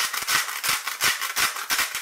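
Disposable salt and black-peppercorn grinders twisted over a pot of boiled potatoes: a rapid run of dry crunching clicks as the grinders work.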